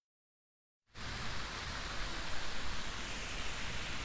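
About a second of dead silence, then a steady, even hiss of background noise with no distinct events in it.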